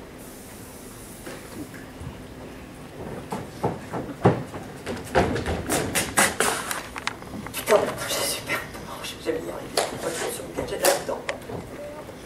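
Indistinct voice sounds without clear words, mixed with irregular knocks and clicks. These begin about three seconds in, over a faint steady background.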